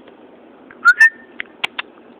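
A short rising whistled note with sharp onsets about a second in, followed by three quick clicks: a person whistling and clicking to call a dog.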